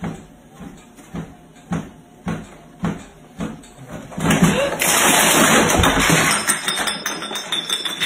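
Bare feet thudding steadily on a home treadmill's running belt, about two steps a second. Just over four seconds in the steps break into a louder clatter and a couple of seconds of loud, scrambling noise as the walker falls off the back of the treadmill.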